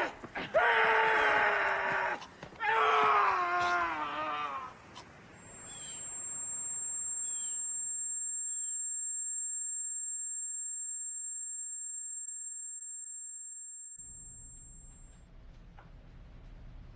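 A man wailing and screaming in anguish, long cries that sag in pitch, for about the first five seconds. Then a steady high-pitched ringing tone holds for most of the rest and fades out near the end, giving way to a low hum.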